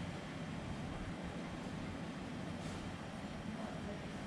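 Steady low rumble with an even hiss above it: a workshop's background noise.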